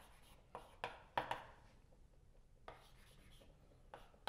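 Chalk writing on a blackboard: a handful of short, faint scratches and taps, several in the first second and a half, then a pause, then a couple more.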